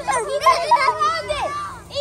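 Several children shouting and calling out in high, excited voices, with no clear words.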